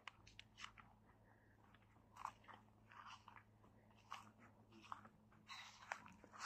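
Near silence with faint, irregular clicks and crackles scattered through it over a low steady hum.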